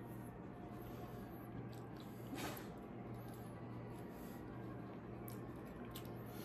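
Quiet room with a low steady hum and faint, soft squishy handling noises of a hot pepper being worked by hand, with one slightly louder soft noise about two and a half seconds in.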